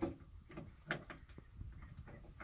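A few light clicks and clinks of metal hook hardware, a carabiner and safety chain, being handled and hooked up, with two sharper ticks about a second in.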